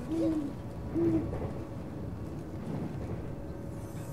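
An owl hooting twice, two short calls about a second apart, over the steady low rumble of a moving train carriage.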